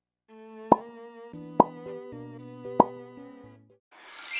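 A short background music tune of held notes, with three sharp pop sound effects spaced about a second apart over it.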